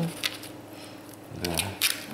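A few soft, wet clicks as a silicone basting brush dabs maple syrup onto the skin of whole raw trout, with a short spoken "da" in between.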